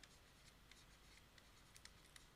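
Near silence, with a few faint ticks of a stylus writing on a tablet screen.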